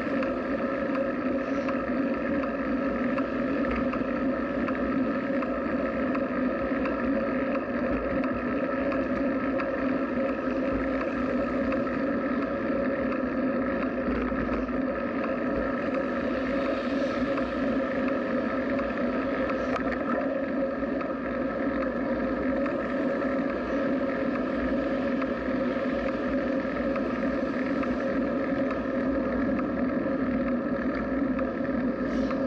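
Steady droning hum with wind and rolling noise, picked up by a camera mounted on a bicycle riding at a constant pace; the level and pitch stay even throughout.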